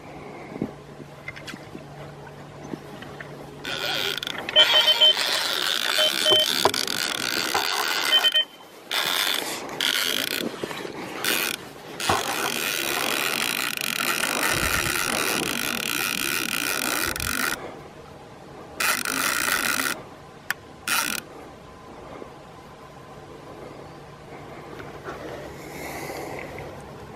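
A spinning reel's drag buzzing in several bursts as a hooked Russian sturgeon pulls line from it. The longest run comes about halfway through and lasts some five seconds; the stretches at the start and end are quieter.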